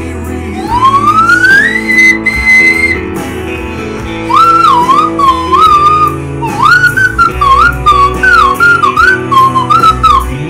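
Slide whistle played over recorded backing music: a long upward slide to a high held note, then from about four seconds in a wavering melody of short notes joined by slides.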